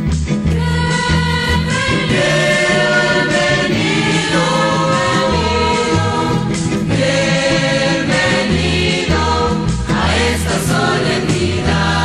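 Christian music group singing a hymn in chorus over instrumental accompaniment with a stepping bass line.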